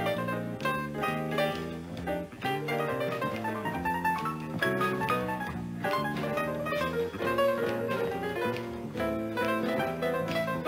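Jazz played on a Blüthner grand piano: quick runs of notes in the upper range over a moving bass line.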